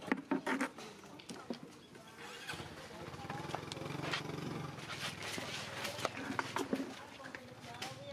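Baby macaque crying out in shrill calls while its mother handles it roughly during weaning, with sharp clicks and scuffles in clusters near the start and again late on. A low steady hum swells and fades in the middle.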